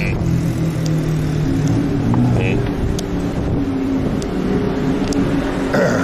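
Street traffic with motor vehicle engines running past, a steady low engine note that shifts in pitch a couple of times.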